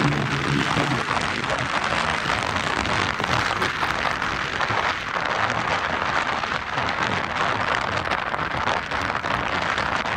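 A sand buggy's engine, revving as its tires spin in the sand, fades out in the first second. After that a steady, loud rushing hiss of strong wind on the microphone fills the rest.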